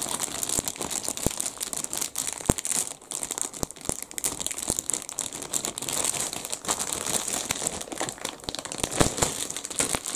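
Clear plastic kit bagging crinkling and rustling as model-kit sprues are handled, with many light clicks and knocks scattered through it.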